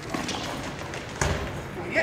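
Goalball play: the bell-filled goalball rattling as it is thrown, then a sharp thud just over a second in as it meets the diving blockers on the court floor.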